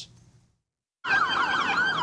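Police car siren in a fast up-and-down yelp, about four sweeps a second, cutting in sharply about a second in after a brief silence.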